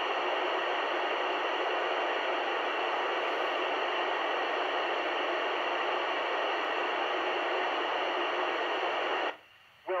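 FM radio receiver on 145.800 MHz hissing loudly and steadily while the ISS downlink is silent between transmissions. Near the end the hiss cuts off suddenly as the space station's signal returns, just before the astronaut's voice resumes.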